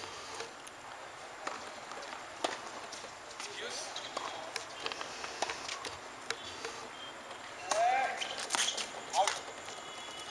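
Light, sharp knocks of a tennis ball, spaced about a second apart, on a tennis court. Faint voices of players come in near the end.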